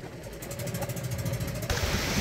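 Engine of a motorized outrigger boat running steadily with a fast, even beat; it cuts off abruptly shortly before the end.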